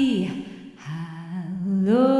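A woman's voice humming a slow wordless melody: a note sliding down at the start, a brief lull, a low held note, then a rise to a higher sustained note near the end.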